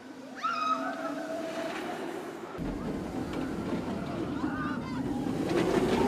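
A few high, gliding voice-like calls over faint voices, then from about two and a half seconds in a steady low rumble of a steel roller coaster train running along its track, growing a little louder near the end.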